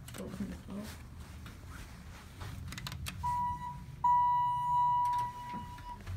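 Electronic beeper in a Dover hydraulic elevator car: a short steady beep about three seconds in, then a louder steady beep lasting about two seconds, over a low rumble.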